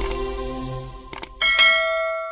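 Closing music fading out, then two quick clicks and a bright bell chime that rings on: the mouse-click and notification-bell sound effect of an animated subscribe button.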